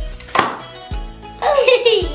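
Homemade toilet-paper-roll confetti popper pulled and released: one short, sharp pop about half a second in, with a couple of soft thumps around it, over background music. A child laughs near the end.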